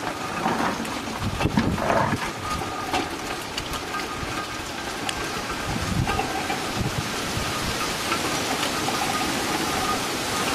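Hand-cranked coffee depulper running as coffee cherries feed through it and stripped beans drop out: a steady rattling, rain-like clatter with a few louder knocks in the first two seconds.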